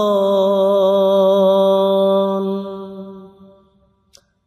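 A solo voice singing a Bangla Islamic song (gojol) with no instruments, holding one long steady note at the end of a line. The note fades out about three seconds in, leaving a short silence.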